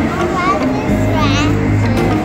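A coin-operated kiddie ride playing its music, with steady low tones underneath and a child's high voice twice, briefly.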